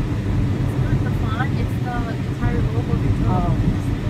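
Steady low rumble of a car's engine and tyres heard from inside the cabin while driving, with quiet talking over it.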